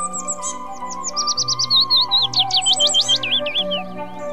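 Background music of held tones with a bird's rapid run of high, sweeping chirps over it, starting about half a second in and stopping shortly before the end.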